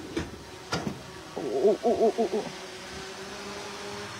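Two short knocks, then a person's voice for about a second, over a steady background hum at a building site.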